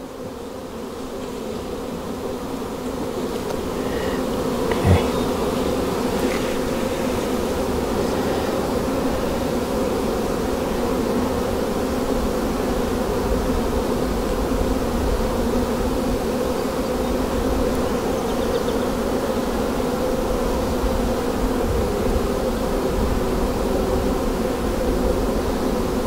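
Many honey bees buzzing around an opened hive: a dense, steady hum that grows over the first few seconds and then holds. A single light knock about five seconds in.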